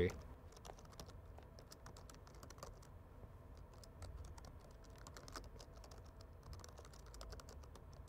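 Computer keyboard being typed on: faint, irregular runs of quick key clicks.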